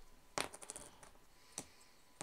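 Coin-style game tokens clinking as a hand picks from a pile on the table to pay a card's cost of three: two clinks about a second apart, the first with a brief metallic ring.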